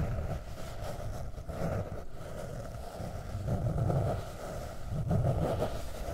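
Long fingernails scratching across the cover of a hardcover notebook, picked up very close by the microphones. It is a continuous scraping that swells and eases every second or two.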